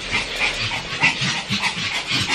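A small dog panting quickly close to the microphone, a rapid run of short breaths, about three to four a second.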